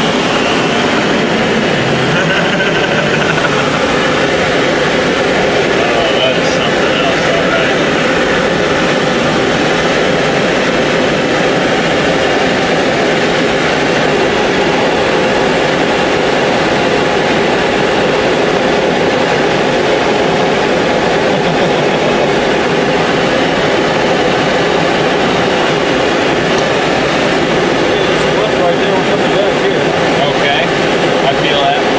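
Steady rush of air over a glider's canopy mixed with the drone of the tow plane's engine ahead, heard from inside the glider's cockpit while on tow.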